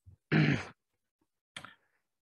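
A man breathing audibly between sentences: a short breathy exhale like a sigh about a third of a second in, then a fainter short breath near the end.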